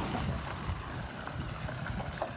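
Low, uneven rumble of wind buffeting a phone's microphone while the phone is carried at walking pace.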